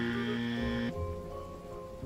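Background music of held, sustained tones: a brighter chord for about the first second, then softer steady notes.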